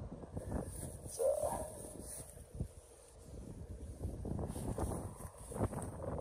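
Wind noise on the microphone, low and fairly quiet, with one short faint sound about a second in.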